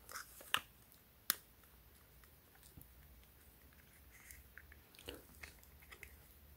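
Faint close handling noises from a DJI Osmo Pocket gimbal camera being slid out of its plastic protective cover: two sharp plastic clicks in the first second or so, then softer ticks and light rustling near the end.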